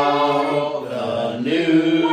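A group of voices singing a hymn a cappella, holding long notes in harmony and moving to a new chord about one and a half seconds in.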